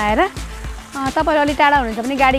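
A woman singing a Nepali song, holding long notes with a short break in the middle.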